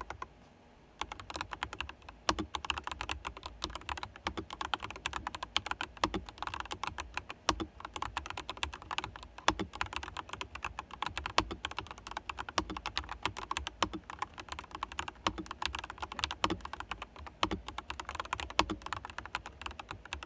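Full-size RK mechanical keyboard with light K-white switches, typed on quickly with both hands: a dense, irregular run of key clacks that starts about a second in.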